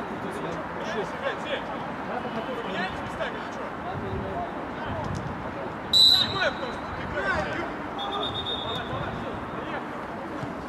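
Players' voices calling across an outdoor football pitch, with a loud short referee's whistle blast about six seconds in and a fainter, longer whistle about two seconds later.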